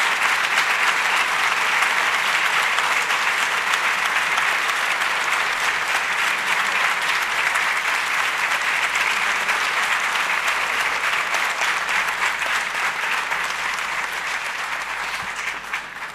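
Sustained applause from a chamber full of people clapping, easing off slightly and dying away at the very end.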